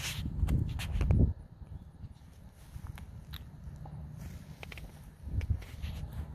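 Footsteps on grass and bumps of the handheld camera as the person filming walks, heavy low thumps for the first second or so, then quieter with scattered light clicks and one more thump near the end.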